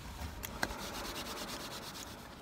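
A quick, even run of rasping rubbing strokes, starting about half a second in, with one sharp click just after they begin.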